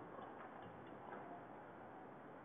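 Near silence: faint room tone with a few faint, irregular ticks.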